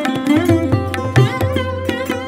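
Sarod and tabla playing Hindustani classical music: a quick run of plucked sarod notes, many sliding in pitch, over the tabla's steady strokes and sustained low bass.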